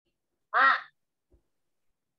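A single short spoken syllable, "Ma", said once about half a second in: a reading prompt sounding out the syllable.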